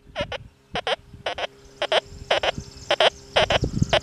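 XP Deus 2 metal detector giving a high tone as the coil sweeps back and forth over a silver dime lying with a small nail: quick double beeps, about two a second. The high tone signals the detector picking the dime out next to the iron nail.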